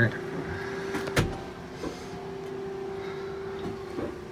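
A steady hum holding one even tone, with a single sharp click about a second in.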